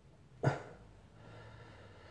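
A single short spoken word, "all", about half a second in; otherwise faint room tone.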